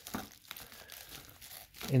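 Scissors cutting into a plastic bubble mailer, with the plastic crinkling as it is handled; faint, with a few short snips early on.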